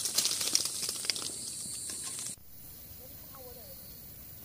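Crackling rustle of leaves and twigs, with insects trilling steadily in the background. Both cut off suddenly a little past halfway, leaving only a faint hiss.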